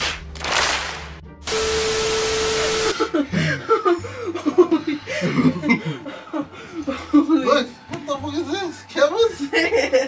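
An edited-in sound effect: a short burst of hiss, then about a second and a half of steady hiss with a held tone. After that comes laughter over quiet background music.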